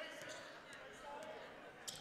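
Faint hall ambience of a basketball game: a basketball being dribbled on a hardwood court, with faint voices in the gym.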